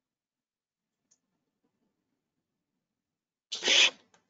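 Silence, then near the end a single short, loud rustle and bump of the webcam and its microphone being handled and moved.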